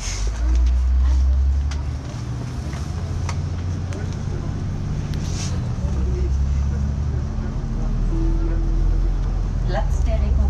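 Engine and drivetrain of a MAN ND 313 double-decker bus under way, heard from the passenger deck: a steady low drone that changes level in steps a few times as it drives.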